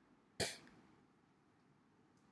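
A single short cough about half a second in.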